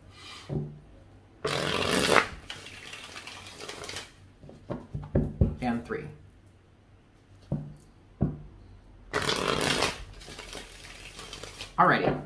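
A tarot deck being shuffled: two short bursts of shuffling noise, each under a second and about seven seconds apart, with light clicks of card handling between them.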